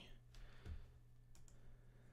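Near silence with a few faint computer mouse clicks over a low steady hum.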